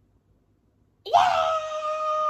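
A woman's drawn-out, high-pitched vocal wail that starts about a second in, sweeps up quickly and then holds one steady pitch.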